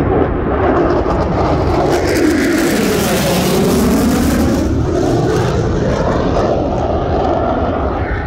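Lockheed Martin F-22 Raptor's twin Pratt & Whitney F119 turbofan engines in a low flyby: a loud, steady jet roar. The hiss peaks about three to four seconds in as it passes, and the pitch sweeps downward as it goes by.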